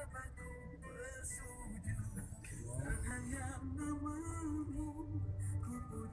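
Music with a melody line over a steady low rumble.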